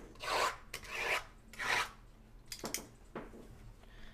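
Sealed cardboard trading-card boxes sliding and rubbing against one another as a stack is shuffled by hand: three rasping swishes about two-thirds of a second apart, then a few light clicks and taps as the boxes are set back down.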